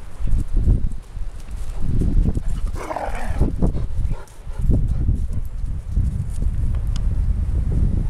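A dog barks once about three seconds in. Continual low thumping and rumbling from the moving, hand-held camera runs underneath.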